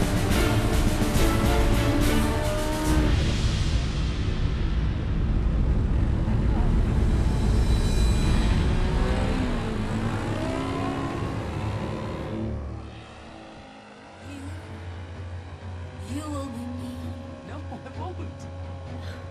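A music track with a singing voice. It drops to a quieter passage about thirteen seconds in.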